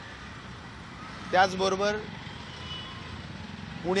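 A man speaking in short phrases with pauses: one phrase about a second in and speech starting again near the end, over steady outdoor background noise.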